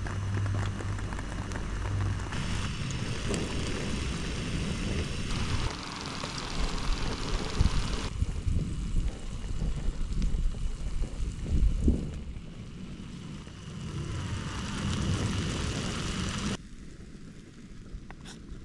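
Egg mixture sizzling in a pan on a portable gas camping stove, with the burner's hiss. The noise shifts abruptly in level several times, and a few light clicks come near the end.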